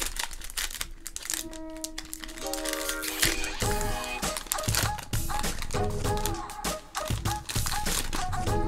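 Foil trading-card pack wrapper crinkling and tearing as it is ripped open by hand, over background music. The music comes in about a second and a half in and picks up a beat about halfway through.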